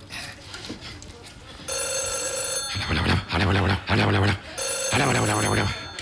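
White corded landline telephone ringing twice, each ring about a second long and about three seconds apart: an incoming call.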